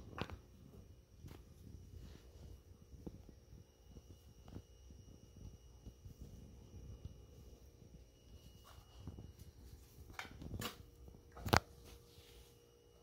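Faint, scattered sounds of a small dog moving about on carpet, with a few sharper clicks or taps near the end.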